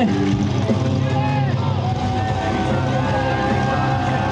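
Portable fire pump engine running steadily during a fire-sport attack, with shouts over it.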